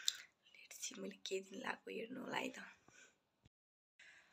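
A woman talking softly to the camera for about three seconds. The sound then drops out to silence near the end, at a cut in the edit.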